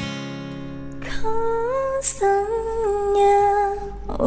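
Acoustic guitar cover song: a strummed chord rings out and fades. From about a second in, a solo voice sings held notes that step up and down in pitch, with no accompaniment.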